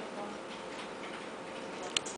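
Steady background noise with faint voices, broken by a sharp click near the end.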